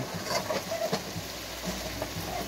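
Ground turkey frying in a skillet: a steady sizzle full of small crackles.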